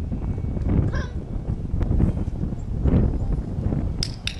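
Wind rumbling on the microphone, with a brief faint high-pitched call about a second in and another faint one near three seconds.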